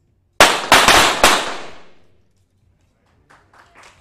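A ragged volley of .22 sport-pistol shots from several shooters firing almost together: about five sharp cracks within a second, each ringing off the indoor range and dying away over the next second.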